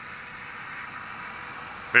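Steady hiss of outdoor background noise with no distinct events; a man's voice starts just at the end.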